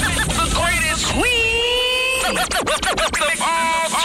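Radio show intro sweeper: chopped voice snippets and one long held vocal note over music, with a short burst of turntable scratching a little past the middle.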